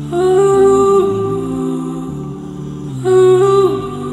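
Melodic electronic music led by a wordless vocal line in two swelling phrases, each ending in a downward slide, over sustained chords.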